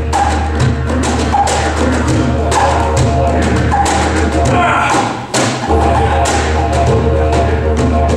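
Live music: a didgeridoo drone held steady beneath quick, rhythmic hand-percussion strikes. The drone drops out briefly about five seconds in, then returns.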